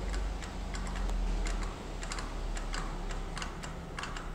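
Felt-tip marker tapping and scratching on a whiteboard while drawing, giving short irregular clicks several times a second over a steady low hum.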